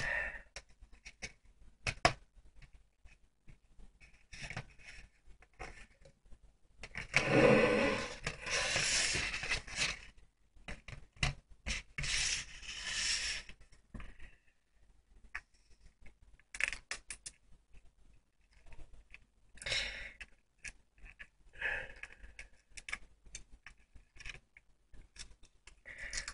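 Scraping, small clicks and rustling from a wrapped ring packet being handled and torn open by hand. There are two longer bouts of rustling or tearing, about seven and about twelve seconds in.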